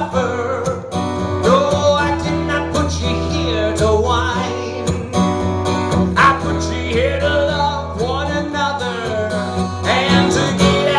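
A man singing while strumming an acoustic guitar steadily, a solo live performance of an upbeat song.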